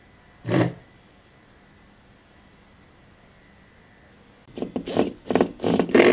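A single short scrape about half a second in, then, after a quiet stretch, a run of short scraping and rubbing noises near the end.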